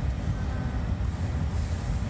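Steady low rumble of a small car's running engine, heard from inside the cabin while parked.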